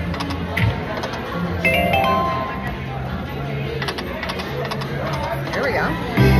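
Konami Pharaoh's Power video slot machine playing its electronic reel-spin music as the reels spin: a run of low held notes with a few short chiming tones about two seconds in, plus scattered clicks.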